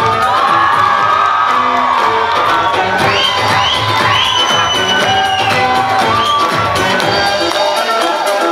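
Bollywood dance-remix music played loud, with the watching crowd cheering and whooping over it; the high shouts stand out around the middle.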